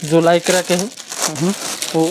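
A man talking over the crinkle of plastic garment packaging being handled.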